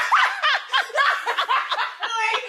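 Women laughing and giggling, high-pitched and loud, the laughs coming one after another.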